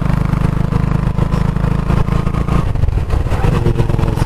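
Motorcycle engine running while riding along at road speed, with a heavy, steady low rumble that eases briefly about two and a half seconds in.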